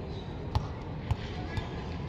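A ball bouncing on hard paving: two short thuds about half a second apart, over faint background voices.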